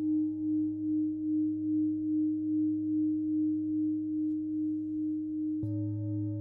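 Crystal and Tibetan singing bowls ringing together in a sustained hum that pulses about twice a second. Near the end a bowl is struck with a mallet and a fresh, fuller tone joins in.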